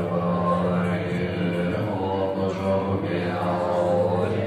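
Tibetan Buddhist monks chanting prayers together in a low, steady drone.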